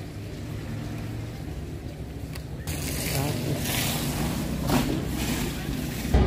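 Outdoor ambience: a steady low rumble with faint, indistinct voices, growing a little louder about halfway through.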